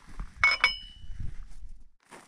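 Two light metallic clinks about half a second in, a fifth of a second apart, the second one ringing on briefly: steel motor parts being handled, a TSDZ2 main gear and its sprag clutch bearing.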